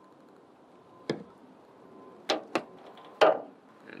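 Electrical wires being stripped and handled by hand for crimp connectors: four sharp clicks and snaps, one about a second in and three close together in the second half, the last the loudest.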